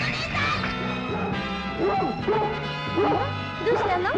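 A dog barking and whining in a quick run of short yelps through the second half, over steady background music.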